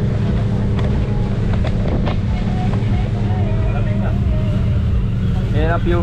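Motorboat engine running steadily, a low continuous rumble heard from inside the boat's cabin, with a man starting to speak near the end.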